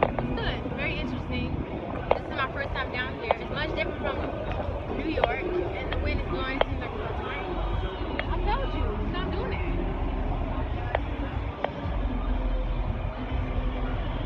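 Busy city street: passers-by talking in the background over a steady low rumble of traffic, with a few sharp clicks.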